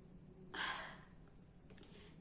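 A woman's short sigh, a soft breath out about half a second in that fades away, against quiet room tone.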